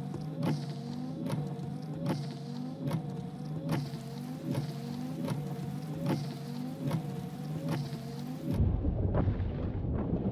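Car with its engine running and windscreen wipers sweeping at a steady beat: a tick and a rubbery squeak on each stroke, about every 0.8 seconds, over a low hum. Near the end a deep rumble comes in.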